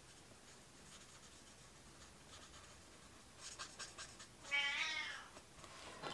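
A domestic cat meows once, a single short call about four and a half seconds in. A few faint light clicks come just before it, after a quiet stretch.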